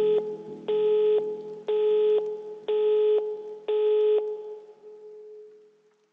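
Telephone busy/disconnect tone signalling that the call has ended: five beeps at about one a second, each about half a second long, with the last one dying away.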